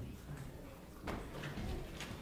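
Faint movement of people in a large room: shuffling and footsteps over a low rumble, with one sharp knock about a second in.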